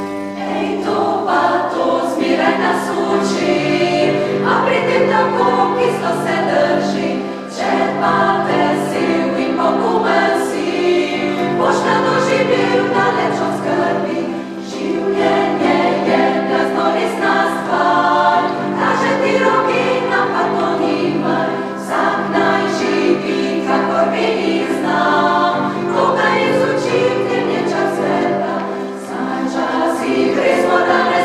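Women's choir singing in parts, with low held notes sustained beneath moving upper voices.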